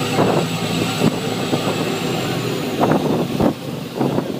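Steady drone of a tour boat's engine, with irregular gusts of wind buffeting the microphone every second or so.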